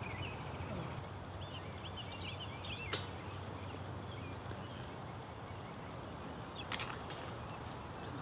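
Birds chirping in the background, a sharp click about three seconds in, then near the end a disc golf putt striking the metal chains of a basket, a jingling chain rattle as the disc drops in.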